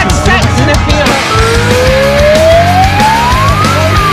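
Loud, heavy rock music over a single slow wail that starts about a second in, rises steadily in pitch for over two seconds and turns to fall near the end, like one cycle of a siren.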